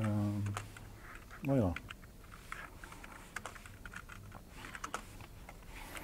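Computer keyboard typing: a run of quick, irregular key clicks as code is edited. There are two brief voice sounds near the start.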